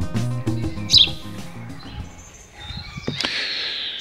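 Background music fading out in the first second or two, giving way to birds chirping outdoors: a short chirp about a second in and a longer stretch of twittering near the end.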